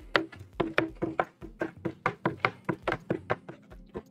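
A metal spoon stirring baking soda into water in a small plastic container, clicking against the container's sides several times a second in an uneven rhythm, each click with a brief ring.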